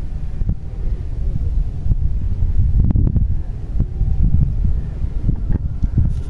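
Wind buffeting an outdoor microphone: a steady, uneven low rumble, with a few faint clicks about halfway through.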